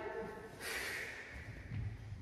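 A woman's forceful breath out, a hissy exhale starting about half a second in and fading over about a second, followed by a few soft low thuds near the end.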